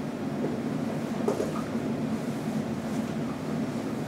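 Steady room noise from the classroom's ventilation, with a faint short marker stroke on the whiteboard about a second in.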